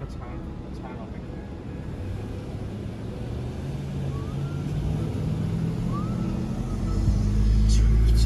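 Road and engine noise inside a moving car, growing steadily louder, with a heavy low rumble taking over about seven seconds in.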